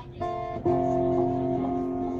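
Acoustic guitar strumming: a chord struck about a fifth of a second in, then a louder chord just after half a second that rings on.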